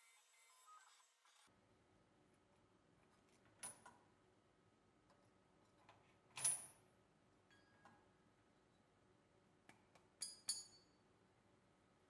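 Near silence, broken by a few faint metallic clinks and clicks. The clearest, with a brief ring, comes about halfway through, and a small cluster follows near the end.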